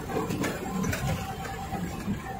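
Truck engine running and the cab rattling as it drives slowly over a rough, rutted dirt road, heard from inside the cab: a steady low rumble with a couple of brief knocks.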